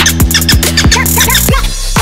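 Dark electronic music (darksynth / dark electro) with a fast, heavy beat over sustained bass notes and short, high sliding synth notes. A burst of hiss a little past halfway leads into a brief thinner break.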